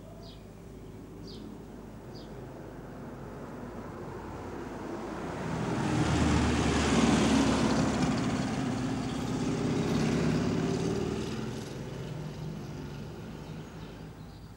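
A road vehicle driving past on the street: its engine and tyre noise swells to a peak about halfway through and fades away again near the end. A few short bird chirps sound near the start.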